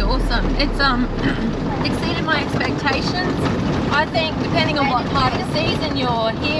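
Steady engine and road rumble inside a moving Nissan Patrol's cabin, with voices talking indistinctly over it.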